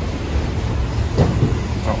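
Steady low rumble of an idling diesel truck engine close by. A short spoken word comes near the end.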